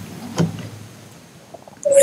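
A pause in a man's speech: quiet room tone, with one short faint sound about half a second in, and his voice coming back in right at the end.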